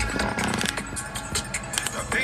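Background pop music with a busy beat, in a short passage without the singing.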